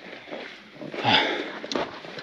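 A man's breathy 'ah' sigh about a second in, falling in pitch, over faint background noise.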